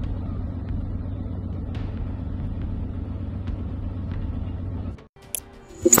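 Low, steady rumble of a tracked armoured vehicle's engine running, which cuts off about five seconds in. A short, sharp electronic sting follows just before the end.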